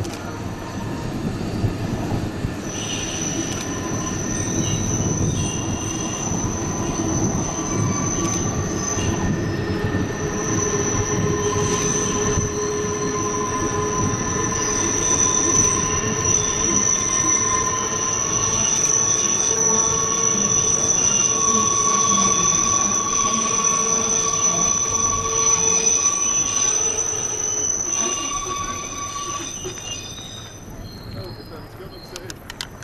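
Wheel squeal from a Rhaetian Railway Bernina line train, Allegra electric railcars with panoramic coaches, rounding a tight horseshoe curve. Several high, steady squealing tones ring over the rumble of the wheels, setting in a few seconds in and fading near the end as the train draws away.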